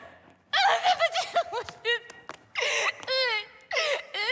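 A woman's exaggerated comic sobbing and whimpering in short broken bursts, her voice bending up and down in pitch.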